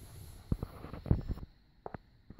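A few short, dull knocks in the first part, then the sound drops to near silence a little before the end.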